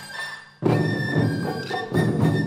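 Ensemble of taiko drums dies away to a brief lull, then comes back in with a sudden loud unison hit about half a second in and keeps drumming. A Japanese bamboo flute (shinobue) holds a high note over the drums.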